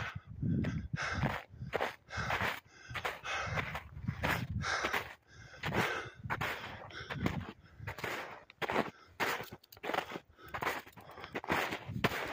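Footsteps crunching through snow at a steady walking rhythm, somewhat under two steps a second.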